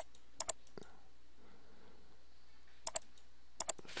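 Faint clicks of a computer mouse button, four in all, each a quick double tick of press and release, spaced irregularly as the program is stepped through in the simulator.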